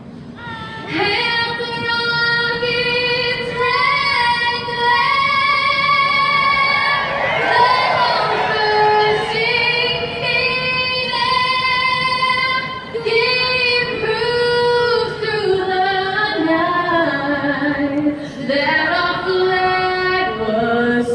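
A woman singing the national anthem solo into a microphone, in long held notes.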